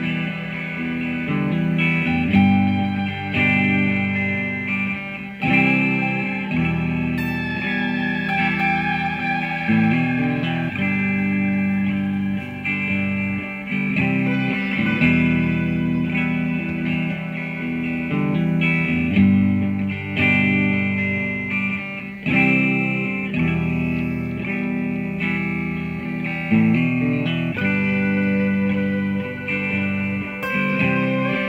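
Squier Classic Vibe '60s Stratocaster electric guitar through a BOSS GT-1 effects processor, playing relaxed ambient blues. A short looped chord pattern repeats about every four to five seconds while a lead line is picked over it, with a bent note about a quarter of the way in.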